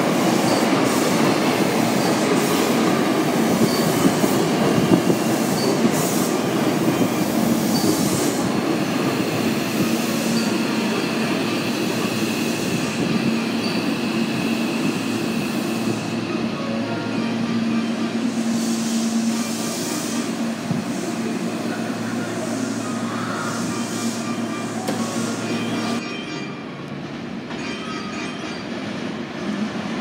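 Hankyu electric train running slowly past the platform close by: a continuous rumble with a steady low hum and regular clicks of the wheels over rail joints. About 26 seconds in, the sound drops suddenly to a quieter, more distant train noise.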